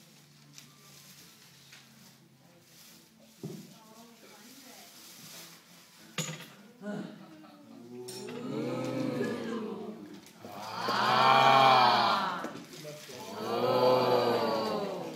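Long, drawn-out wordless vocal sounds in the second half, like sustained 'ooh' calls whose pitch rises and falls; the loudest comes about two-thirds of the way through, with another near the end. Before that there is only faint room murmur with a couple of small clicks.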